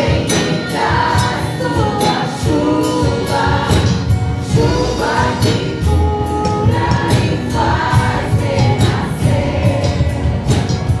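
Live Christian worship song sung by a group of women, with a steady beat behind the voices.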